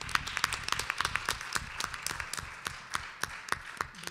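Audience applauding: a dense patter of hand claps that thins out near the end.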